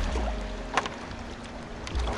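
Water sounds around a small plastic kayak drifting near shore, with a low wind rumble on the microphone and a sharp knock about a second in.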